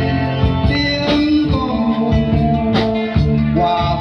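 Live band playing a song, with electric bass, acoustic guitar and drums, while a man sings into a microphone.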